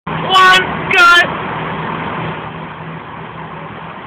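Two short, loud, high-pitched voice calls in the first second and a half, the second bending in pitch, over a steady low hum of vehicle noise that carries on after them.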